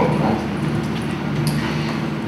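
Pause in a talk: a steady low hum and hiss from the room and its sound system, with one faint click about one and a half seconds in.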